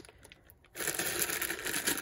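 Plastic zip-top bag crinkling, with small LEGO pieces shifting and rattling inside, as hands shuffle through it. It starts about three quarters of a second in, after a moment of near quiet.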